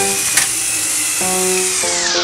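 Background music playing over the steady high whir of battery-powered toy train motors, with a sharp click about half a second in. Near the end the whir's pitch starts to drop as the engines push against each other.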